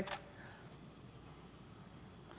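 Near silence: faint room tone with no distinct sound.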